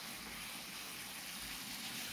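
Steam hissing steadily and faintly from a New-Tech industrial steam iron as it sits on its base.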